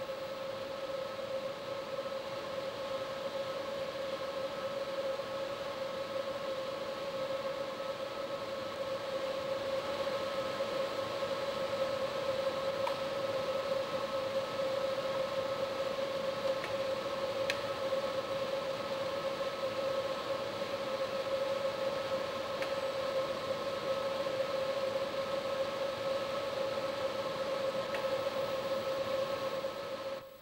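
Steady machine whine with a hum under it, one unchanging pitch with fainter higher tones, from the motors of an automated investment-casting shell-building machine as it turns the slurry tank and moves the wax tree.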